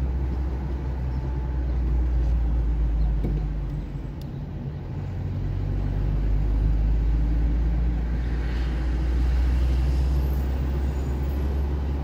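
Car driving on a road, heard from inside the cabin: a steady low rumble of engine and tyres that eases briefly about four seconds in.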